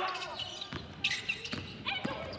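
A basketball bouncing on a hardwood court, a few separate knocks during live play over quiet gym background noise.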